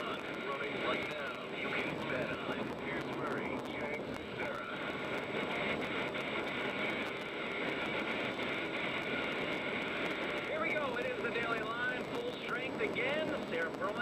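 Sports-radio broadcast audio, cut off above about 4 kHz: indistinct voices under a steady noisy background, with clearer talk about three-quarters of the way through.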